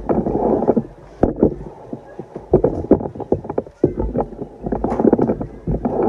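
Danza drummers beating large bass drums in a rhythmic pattern, with dense flurries of rapid strokes about every two seconds between sparser single hits.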